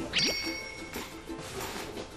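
A single bright ding just after the start, ringing for about a second, over soft background music.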